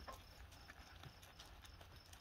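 Near silence: faint cricket chirps repeating about three times a second, with scattered light ticks of footsteps on gravel.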